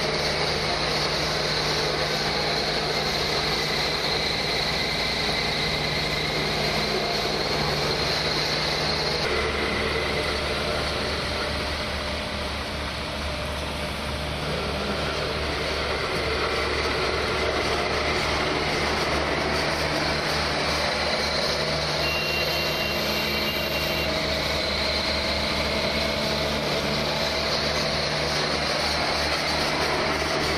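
Diesel engines of an asphalt paver and the tipper truck feeding it, running steadily at the paving site. The engine note changes about nine seconds in, and a short high beep sounds a little after twenty seconds.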